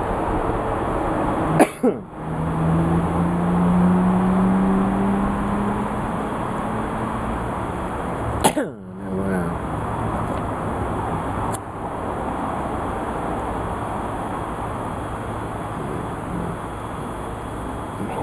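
Steady background noise with a low drone for several seconds in the first half, broken by a few sharp clicks, about two and eight and a half seconds in.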